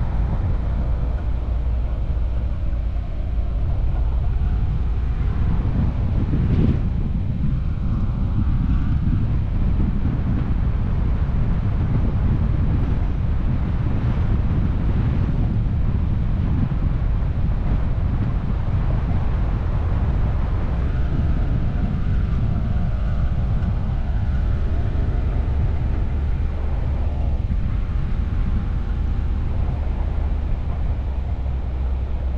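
Ram Power Wagon pickup driving slowly over a dirt and gravel track: a steady low rumble of engine and tyres, with wind noise on the microphone and one brief knock about seven seconds in.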